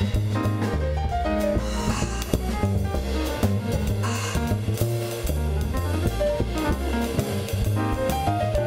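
Live jazz piano trio playing: grand piano, upright acoustic bass and drum kit, with shifting piano notes over the bass and cymbal washes about two and four seconds in.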